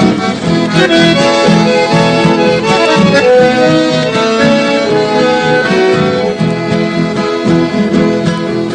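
Chamamé music played on accordion over a steady rhythmic accompaniment, in an instrumental passage with no singing.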